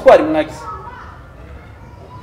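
A man speaking briefly into a microphone in the first half second, then a pause with faint voices in the background.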